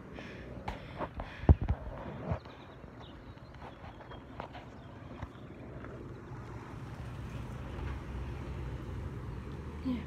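Handling noise on a handheld phone's microphone: several sharp knocks and bumps in the first couple of seconds, the loudest about a second and a half in, then a steady low rumble.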